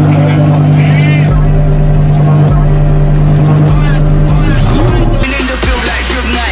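Twin-turbocharged supercar engine idling steadily, then revved once, rising in pitch, near the end. Electronic dance music with a heavy beat comes in just after the rev.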